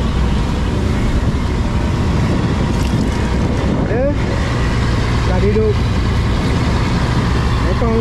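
A fishing boat's engine running steadily while underway, a continuous low drone under the rush of seawater from the wake and the hose pouring into the live-bait well.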